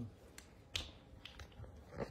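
A few short, sharp clicks, the loudest a little under a second in and another at the very end, after a brief low voice sound falling in pitch at the start.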